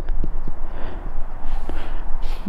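Low wind rumble on the microphone, with a few faint clicks in the first second.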